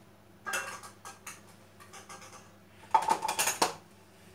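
Dishes clinking and clattering as they are handled and dried with a cloth: a short clatter about half a second in, then a louder run of knocks with a brief ringing tone about three seconds in.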